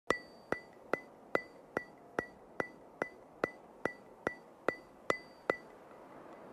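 Fourteen sharp, evenly spaced ticks, about two and a half a second, each with a brief high-pitched ring; they stop about half a second before the end.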